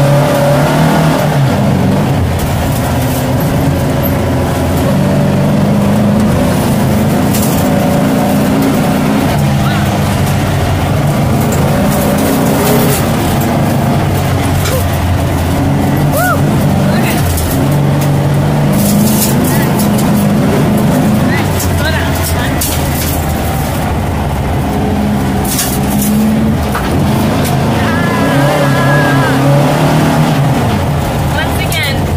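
VW Baja Bug's air-cooled flat-four engine running under load, heard from inside the cabin, its note rising and falling with the throttle. Short rattles and knocks come through as the car goes over the rough dirt trail.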